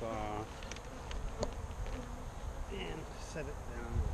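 Saskatraz honeybees buzzing as they fly close past the microphone, several passes with the hum rising and falling in pitch, from a colony that is a little agitated. A low thump near the end.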